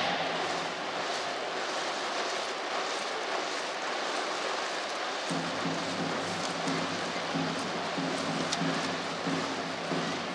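Baseball stadium crowd din under a dome: a steady wash of noise from the stands. About five seconds in, a cheering section's rhythmic music starts up over it.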